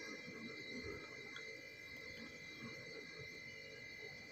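Faint low bubbling and popping of a thick dal and fish-head curry simmering in a kadai, under a steady faint high-pitched tone.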